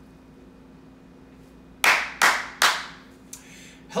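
Three sharp hand claps in quick succession, under half a second apart, each with a short room echo, over a faint steady hum.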